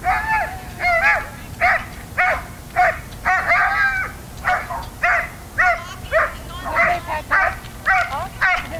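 A dog barking over and over in a steady run of short, high-pitched barks, about two a second.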